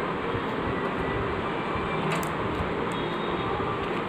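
Steady, even background noise like a fan or distant traffic, with a few faint clicks about two seconds in as plastic stencils are handled.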